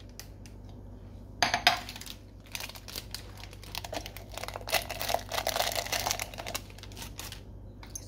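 Small cookies poured from a cardboard box into a glass jar, rattling and clicking against the glass in a dense run of small impacts that goes on for several seconds. A brief handling noise comes first, about a second and a half in.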